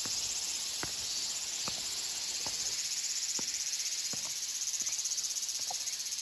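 A chorus of cicadas singing a steady, shrill, finely pulsing drone. Under it are faint, evenly spaced footsteps on concrete steps, a little under one a second.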